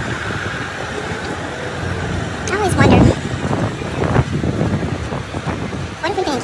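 Tour buses idling with a steady low rumble, under people's voices; the loudest stretch of talk comes about three seconds in.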